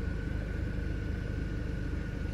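2004 Mercedes-Benz C230 Kompressor's supercharged four-cylinder engine idling steadily, with a faint steady high tone over the low rumble.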